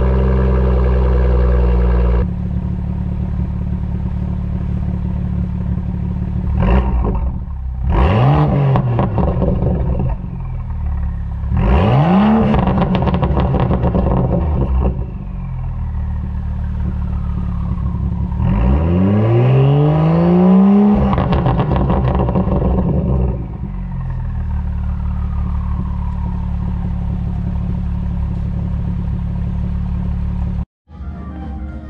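BMW M2's engine idling through its quad-tip exhaust, revved four times. Each rev rises and falls in pitch, and the last one is held longest.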